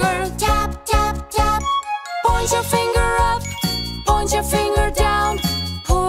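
Children's nursery-rhyme song: bright, tinkling, chiming music with sung lines over it.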